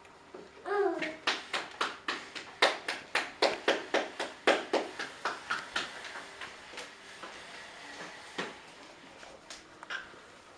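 A brief voiced sound, then a quick, even run of about twenty sharp hand slaps, some four or five a second, stopping about six seconds in.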